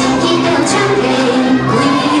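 A Hakka children's song playing, with voices singing the melody over the music.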